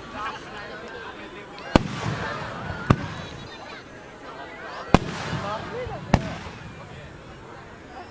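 Fireworks going off with four sharp bangs, spaced one to two seconds apart, over the chatter of a crowd of spectators.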